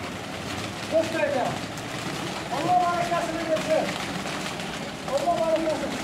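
Pigeons flapping out of a loft in a flock, a fluttering rush of many wings, with a man's voice calling out several times over it, once in a long held call.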